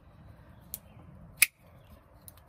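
Trevor Burger LEXK folding knife: a faint click, then a single sharp click about halfway through as the blade snaps open.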